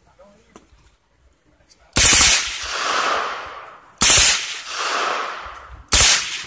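Suppressed submachine gun fired on full auto: three short bursts about two seconds apart, the first coming about two seconds in, each followed by a long echo dying away.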